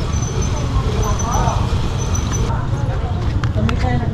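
Busy street ambience: a steady low rumble with faint voices of passers-by, and a few sharp clicks near the end.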